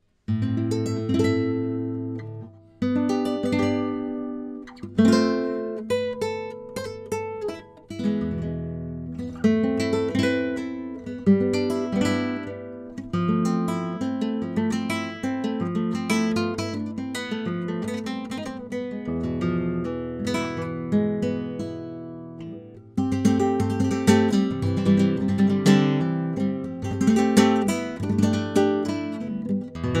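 Kremona Solea nylon-string classical guitar, cedar top with cocobolo back and sides, played solo with the fingers: plucked melody notes and full chords ringing out. The playing begins just after the start and grows louder about two-thirds of the way through.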